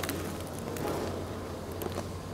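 A person chewing a mouthful of toasted sandwich, a few faint crunchy clicks, over a steady low background hum.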